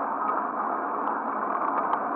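Steady rushing noise from a camera carried by a runner: wind and movement on the microphone, with a few faint ticks.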